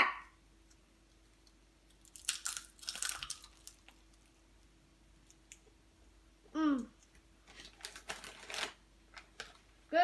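Crunching and crackling of potato chips as a child bites into and chews a chip sandwich, in two separate bouts a few seconds apart.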